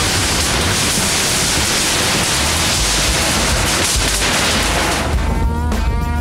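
Off-road buggy landing on a row of sheet-metal storage sheds and crushing one of them: a long, loud, noisy crash over rock music. About five seconds in the crash gives way to a voice over the music.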